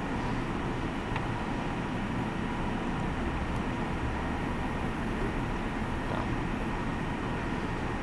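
Steady low rumble of background noise with a faint steady hum above it, and a single faint click about a second in.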